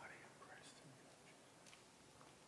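Near silence in a large church, with a faint whisper or murmured voice near the start.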